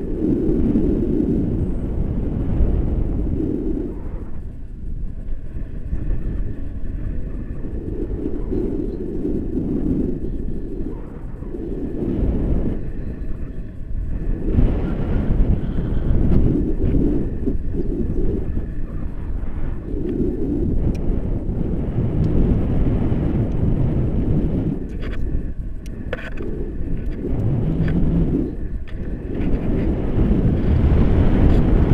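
Wind buffeting the camera microphone in paraglider flight: a loud, low rushing rumble that swells and eases every few seconds.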